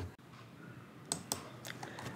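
A few faint, short clicks at a computer in the second half, as the presentation slides are advanced.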